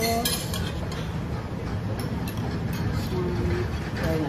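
Forks and cutlery clinking against plates and serving dishes during a meal, with a cluster of sharp clinks at the start and a few more around the middle, over a steady low room noise.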